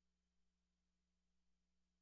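Near silence: only a faint steady low hum.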